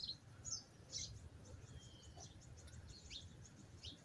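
Faint wild birds chirping: scattered short high chirps and a few brief whistled calls, a little louder at the start and about a second in, over a low steady background rumble.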